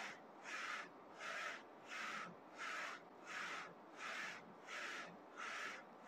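Print-head carriage of a Focus Combo Jet A3 plus UV flatbed printer sweeping back and forth while printing a colour-offset calibration test, a short rush of mechanical noise with each pass, repeating evenly about every three-quarters of a second.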